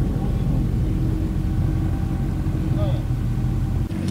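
Outboard motor of a small nori-farming boat running steadily, a low even hum with the boat under way.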